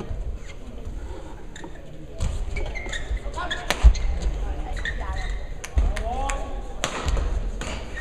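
Badminton players' footsteps thudding on the court floor in a large, echoing sports hall, with a sharp crack about four seconds in and another near the end, and short voice calls in between.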